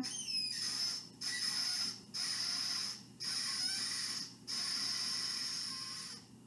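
Five harsh, high-pitched squeals, each about a second long with short breaks between, coming from a meme video played through a screen's speaker.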